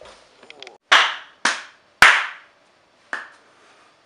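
Four sharp hand smacks in quick succession, each with a short ringing tail in a small room. The third, about two seconds in, is the loudest and the last is fainter.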